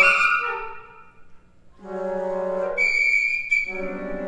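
A flute ensemble playing. It opens with a loud accented chord with a high held tone that fades within about a second. After a short pause come low sustained notes, joined near the end by a piercing high held note.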